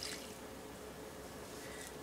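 Faint, steady sound of milk being poured from a plastic measuring jug onto mashed potatoes in a steel pot.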